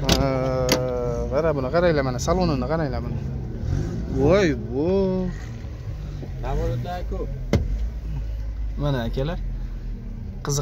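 Men's voices talking at close range over a steady low hum, like a car engine idling.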